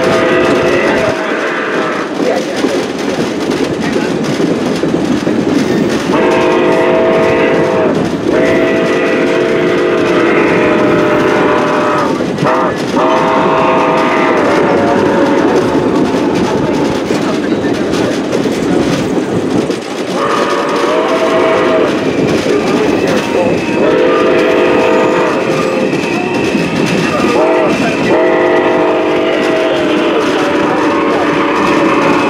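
Train horn blowing chords in blasts over the steady rumble and clickety-clack of the passenger cars on the rails. The blasts run long, long, short, long, the grade-crossing signal, once about six seconds in and again from about twenty seconds in.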